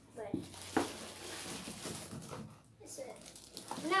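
Small party-favour boxes being handled: a sharp tap just under a second in, then soft rustling.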